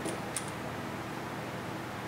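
A steady background hiss, with two small, sharp clicks in the first half second.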